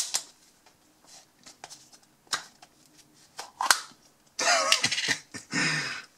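A small plastic tub being opened by hand: one sharp snap of the lid at the start, then scattered light plastic clicks and handling noise, with a louder stretch of plastic noise about four and a half seconds in.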